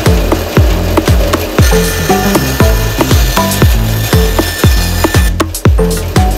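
Background music with a steady thumping beat, over a bandsaw cutting through a small wooden block.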